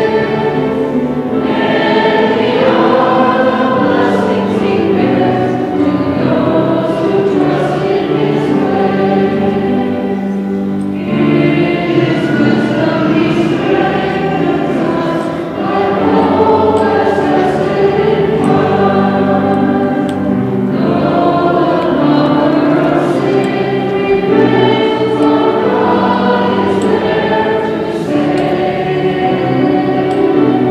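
A choir singing a closing hymn in long sustained phrases, with brief breaks between phrases about eleven, fifteen and twenty-one seconds in.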